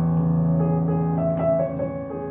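Digital synthesizer keyboard played with a piano sound: a low chord held in the left hand while a few higher notes of a pentatonic line are played over it, a new note entering a little over a second in.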